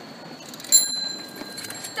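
A bicycle bell on a parked bike is struck once, about three-quarters of a second in, and rings on with a clear high tone that fades over about a second. The last of an earlier ring is dying away at the start.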